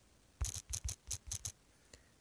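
Quick clicks of keys being tapped on a phone's on-screen keyboard while typing, about seven taps in just over a second.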